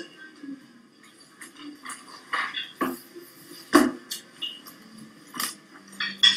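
Cutlery clinking against plates at a dinner table: scattered small clicks with three sharper clinks in the second half, played back through loudspeakers into a room.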